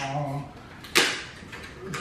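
A man's drawn-out "uh" trails off, then a single sharp click about a second in from the clay bar's plastic packaging being handled.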